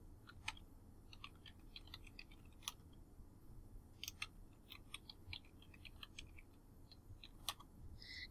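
Faint typing on a computer keyboard: irregular short runs of key clicks.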